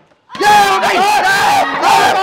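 Several young men shouting together in a loud group yell that breaks out suddenly after a brief hush, about a third of a second in.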